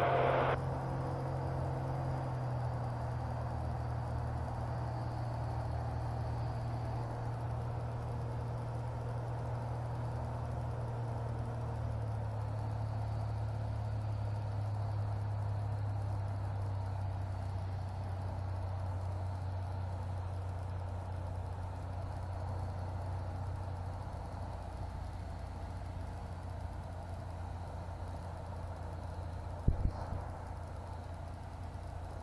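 Corvair 3.0 air-cooled flat-six engine and propeller of a Sonex Waiex, a steady low drone heard from inside the cockpit, easing down a little in pitch and level as the aircraft flies the landing pattern. A brief click near the end.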